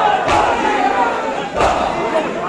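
Large crowd of mourners chanting and calling out together, with sharp unison chest-beating (matam) strikes landing twice, about a second and a half apart.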